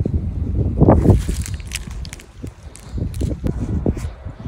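Wind rumbling on the microphone, with scattered rustles and clicks of handling, and a brief voiced sound about a second in.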